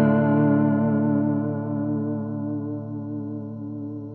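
A single electric guitar chord with a wavering chorus effect, ringing out and slowly fading away.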